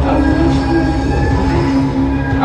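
A loud, steady low rumbling drone with several held tones over it, unchanging throughout.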